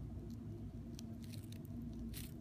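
Faint, irregular crackling clicks of a dragonfly's jaws biting and chewing into the thorax of another dragonfly it has caught, over a low steady hum.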